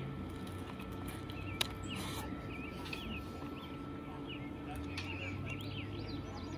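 Small birds chirping over and over in the background, short quick notes throughout, with a faint steady hum and one sharp click about a second and a half in.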